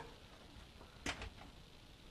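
A single sharp click about a second in, with a couple of fainter ticks after it: a cable connector being pushed into place inside a PC case.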